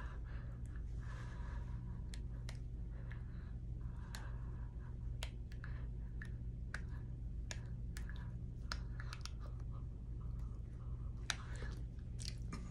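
Dental floss being worked between the upper back teeth, giving faint, irregular small clicks and wet mouth sounds over a low steady hum.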